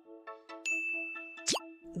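Countdown timer music ticks off its last few short notes, then a bright electronic ding rings out as time runs out, held for about a second. Near its end a very fast upward-sweeping whoosh marks the answer reveal.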